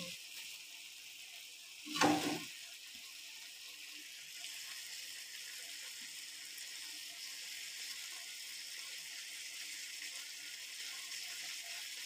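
Tomato, onion, dried anchovy and egg sautéing in a frying pan, sizzling steadily and a little louder after about four seconds. A brief, louder sound comes about two seconds in.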